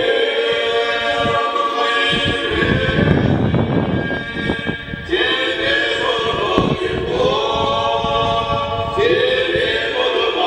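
Unaccompanied choir singing slow, sustained chords, in the manner of Eastern Orthodox church chant, with a new phrase starting near the end.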